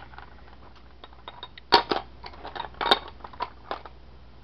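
Seashells clicking and clattering against one another as a hand rummages through a plastic tub of them. Two louder clacks come just under two seconds in and about three seconds in.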